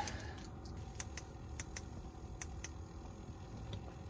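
A few light, irregular clicks, about eight in four seconds, from the ice rod and reel being handled as the bait is lowered back down the hole, over a low steady background.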